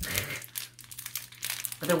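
Small packet crinkling in the hands as it is opened: a quick, continuous run of crackles.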